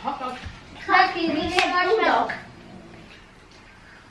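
A child's voice for about a second and a half, with one short sharp click partway through. Quieter room sound fills the rest.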